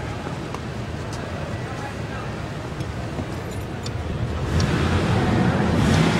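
SUV engine idling smoothly with a steady low rumble, growing louder from about four and a half seconds in.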